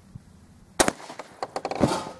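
A 12-gauge shotgun fires a hand-made wax slug: a single sharp, loud report just under a second in. A second sharp crack follows about a second later.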